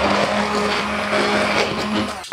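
Hand-held immersion blender running steadily with a constant motor hum as it purées braised vegetables into the cooking liquid in a slow cooker pot, thickening the sauce.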